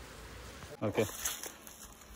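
Honeybees buzzing faintly and steadily around an opened wooden box hive, with a brief spoken "okay" about a second in.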